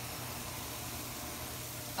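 Corn tortillas and strips of steak sizzling steadily on a hot grill, a faint even hiss with a low hum underneath.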